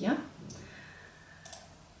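Two short computer mouse clicks about a second apart, picking an entry from a drop-down list on a web form.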